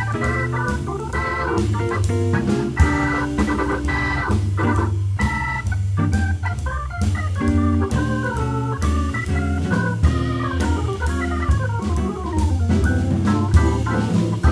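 Jazz organ leading with a moving melodic line over a bass line, accompanied by drum kit and electric guitar; no saxophone.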